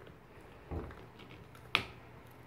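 A dog gnawing a hard Petstages antler chew toy. There is a dull knock about a third of the way in, then one sharp click near the end as teeth and toy strike.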